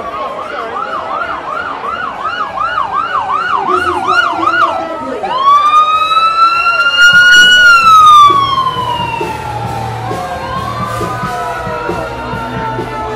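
Ambulance siren on a passing emergency vehicle: a fast yelp warble for about the first five seconds, then a slow wail that rises to its loudest point past the middle, falls away and starts rising again near the end. A low rumble sits under it in the second half.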